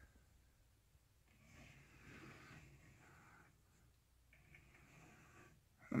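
Near silence, with two faint, soft breaths close to the microphone.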